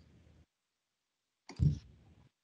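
Faint clicks and small handling noises picked up over a video-call microphone, cutting to dead silence. About one and a half seconds in comes a single low thump, the loudest sound here, like a knock on the desk or microphone.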